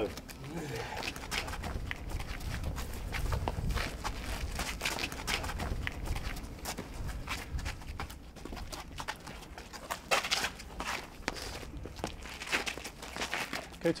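Bare-knuckle boxers' footwork scuffing and stepping on the ground, with many scattered sharp knocks of punches, over a low steady rumble.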